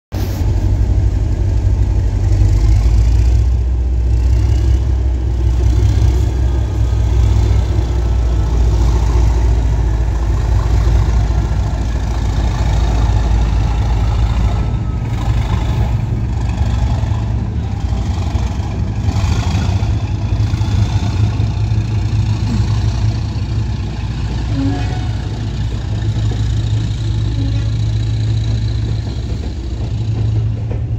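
Diesel train engine running with a steady, loud, low rumble throughout, after an abrupt cut at the very start.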